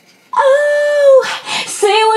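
A woman's voice singing: a brief pause, then one long held note, followed by a run of shorter notes that slide between pitches.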